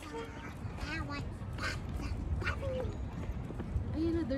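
Wind rumbling on the microphone during a walk outdoors, with faint distant voices and a few short animal calls, about one a second, near the middle.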